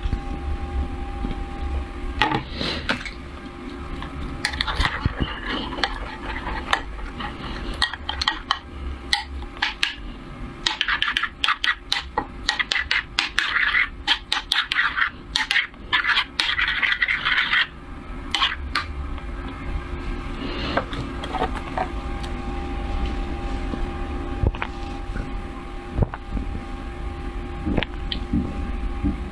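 Metal spoon scraping and stirring thick chili paste in a metal pan, with a dense run of scrapes and clicks in the middle and scattered clinks before and after.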